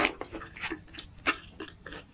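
Close-miked chewing with the mouth closed: a run of short, wet mouth clicks and smacks, about three a second, unevenly spaced.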